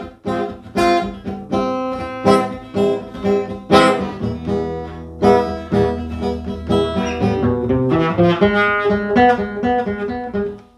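Acoustic guitar played without words: chords strummed about once every two-thirds of a second for the first half, then a run of quicker picked single notes in the last few seconds.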